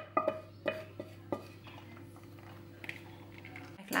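Spatula tapping and scraping against a saucepan as sauce is poured into a baking dish: a few ringing clinks in the first second and a half, then only a faint steady hum until the sound cuts off just before the end.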